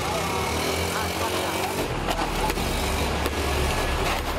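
Motorcycle engine running, its rumble growing louder and deeper about two seconds in, with voices and a few sharp clicks over it.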